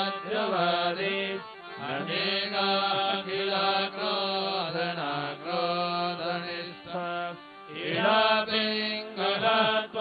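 A Sanskrit hymn to the goddess, sung as a melodic chant over a steady held low note. The line breaks off briefly about two seconds in and again about seven and a half seconds in.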